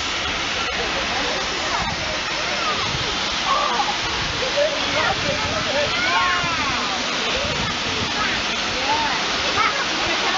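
Steady rushing rumble of passenger carriages rolling past close by behind a steam locomotive, with onlookers' voices calling out over it.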